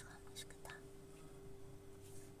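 Very quiet room tone with a steady low hum, and two faint, brief soft sounds about half a second in.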